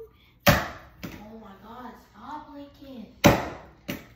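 Two sharp knocks about three seconds apart, the loudest sounds here, with a child's soft wordless humming between them.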